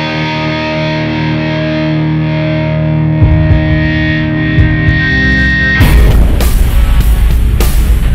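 Les Paul-style electric guitar played through a Line 6 Helix modelling a Suhr Badger 35 amp: a distorted chord held and ringing out, with a few picked notes over it. About six seconds in, a full rock track with drums abruptly takes over.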